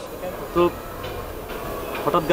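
Steady low background rumble, with one short spoken syllable about half a second in.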